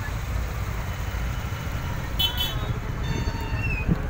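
Roadside traffic background: a steady low rumble with faint distant voices. A brief high pulsing tone sounds about two seconds in.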